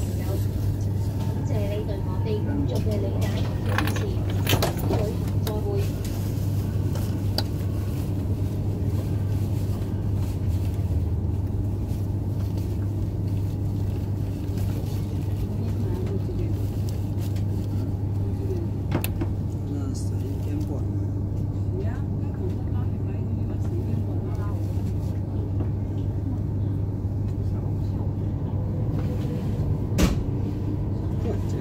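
Steady low running hum inside a moving train carriage, with a few short clicks, one about four seconds in and one about nineteen seconds in, and passengers' voices murmuring in the background.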